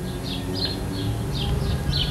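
Small birds chirping repeatedly in the background over a steady low hum.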